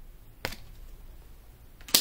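Two short clicks, a faint one about half a second in and a louder tap near the end, from tarot cards being handled and set down on a tabletop.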